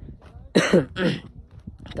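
A person coughing twice in quick succession, about half a second apart.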